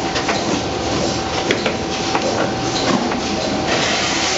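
Automatic potting line of a Demtec 2016EVO pot filler and Urbinati RW8 transplanter running: a steady machine drone with a constant whine, broken by irregular clacks and knocks as pots move along the conveyors.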